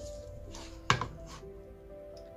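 A hardback sketchbook set down on a hard tabletop with a sharp thud about a second in, with softer knocks of the cover being opened around it, over soft background music.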